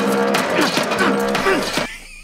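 A telephone receiver slammed repeatedly against a payphone, knocking several times, under a man's long, drawn-out yell; it cuts off suddenly just before the end.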